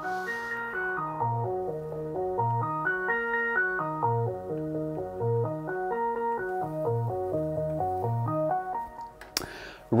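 Korg Mono/Poly analog synthesizer playing an up-and-down two-octave arpeggio with all four VCOs stacked, each oscillator set to a different waveform and octave. The arpeggio runs in even, stepping notes and stops about a second before the end, where a voice comes in.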